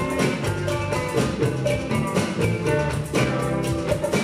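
Live rock band playing an instrumental passage: drum kit keeping a steady beat under bass, electric guitar and keyboard, with no vocals yet.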